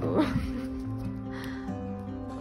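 Background music with steady held notes. Just after the start, a brief sound slides in pitch and is the loudest moment.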